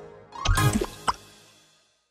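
Cartoon sound effect of a jelly closing over a character: a short rising glide about half a second in, then a single click-like plop about a second in. Both come over the last notes of the song's music, which fade out.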